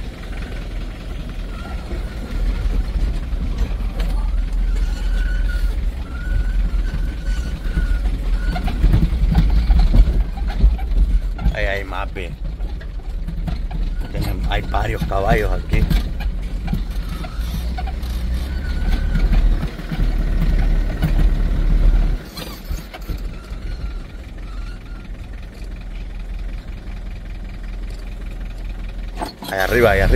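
Delivery truck's engine running at low speed while the truck manoeuvres and turns around, heard from inside the cab as a steady low rumble. It gets quieter about two-thirds of the way through. Brief indistinct voices come in twice near the middle.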